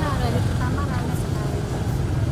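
A woman talking over a steady low background rumble.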